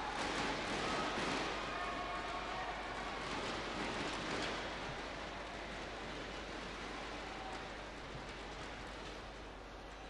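Arena crowd applauding and chattering after a rally, the noise slowly dying away.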